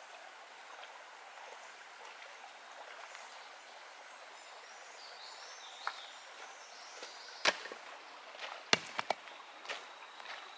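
Stones clacking against stones as river rocks are set down on a pile: a few sharp knocks in the second half, the loudest about seven and a half seconds in and a quick cluster near nine seconds, over the steady trickle of a shallow creek.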